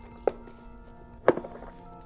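Small black hard plastic case being opened by hand: two sharp clicks about a second apart.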